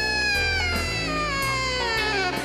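Jazz alto saxophone holding one long note that slowly bends down in pitch, with bass notes and cymbal strokes from the band underneath.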